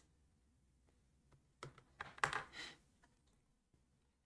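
A few short, soft clicks about halfway through an otherwise very quiet stretch.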